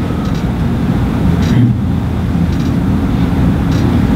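A steady low rumble of room background noise, continuous and fairly loud, with no speech over it.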